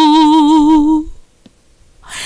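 A woman's voice holding the last sung note of a worship line, steady in pitch with an even vibrato. It fades out about a second in and is followed by a short near-silent pause.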